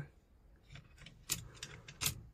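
A few faint clicks and light clinks of a crossbow bolt being picked up and set into the magazine of a multi-shot crossbow, the clearest a little past halfway.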